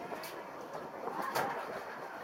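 Indistinct murmur of people's voices, with two short sharp clicks, one just after the start and one past the middle.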